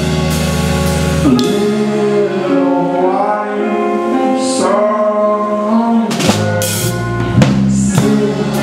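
Live indie rock band playing with drum kit, electric guitars, bass and keyboard. About a second and a half in, the bass and drums drop away, leaving sustained keyboard and guitar notes. About six seconds in, the full band comes back in with cymbal crashes.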